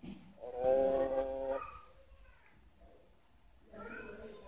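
A small child's voice holding one drawn-out vowel sound for about a second, repeating a letter sound; a second similar sound begins just before the end.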